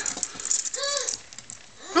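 Metal finger blades of a miniature Freddy Krueger glove clattering and rattling against each other and the leather as it is pulled out, in quick clicks over the first second. A short squeak that rises and falls comes about a second in.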